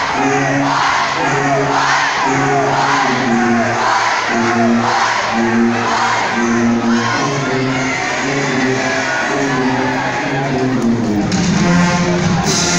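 School pep band with sousaphones and brass playing a steady riff of short repeated low notes, with a crowd shouting and cheering over it. Near the end the band moves into a longer held note.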